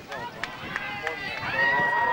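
An announcer's voice over a public-address system, with one word drawn out into a held tone near the end.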